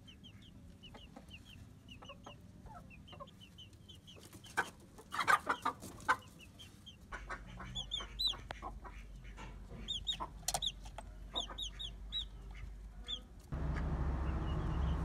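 Chickens clucking, with a steady run of short high-pitched peeps throughout and the loudest clucks about five seconds in. Near the end a steady low rumble sets in suddenly.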